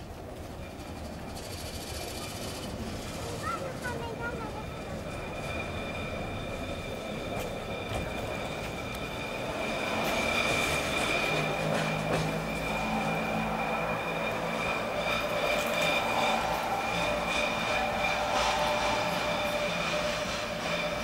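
Electric railcar of the Budapest cogwheel (rack) railway running along the track, with a steady high whine that grows louder from about halfway through.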